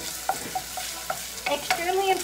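Bacon sizzling as it fries in a pot, with a wooden spatula stirring it, giving several short taps and scrapes against the pot.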